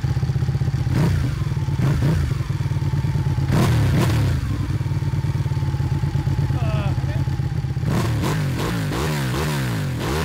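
Ducati superbike engine running at idle, with a few sharp knocks in the first half. From about eight seconds in the throttle is blipped several times, the engine note rising and falling with each blip.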